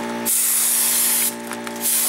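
Gravity-feed paint spray gun spraying black paint from compressed air: a loud, even hiss starts just after the start, stops after about a second, and starts again near the end as the trigger is pulled for another pass.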